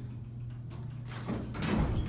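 Montgomery elevator car doors sliding open on arrival at the floor, a soft rush that grows toward the end, over the car's low steady hum.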